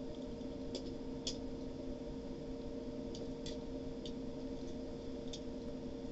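Faint, scattered light clicks and taps, about six of them, from small die-cast toy cars being handled, over a steady low hum.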